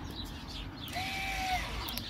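Faint steady whirr of an electric parking brake caliper motor, run directly off a battery to drive the rear brake on. About a second in, a bird calls one drawn-out note lasting under a second.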